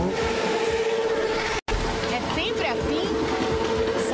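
Motorcycles running on a street, with a steady droning tone throughout and a few short voices in the middle. The sound drops out for an instant at an edit about a second and a half in.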